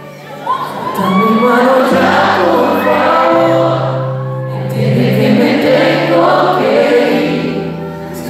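A pop duo and band playing a ballad live: sung vocals over guitar and keyboard, with held bass notes that change every second or two.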